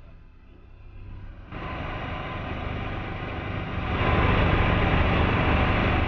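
Motorboat under way, engine and rushing water, growing louder in two steps about one and a half and four seconds in, then cutting off abruptly.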